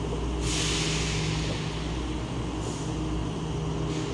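A steady low mechanical hum, with a hiss that starts about half a second in and fades over a second or so, and a fainter hiss near the end.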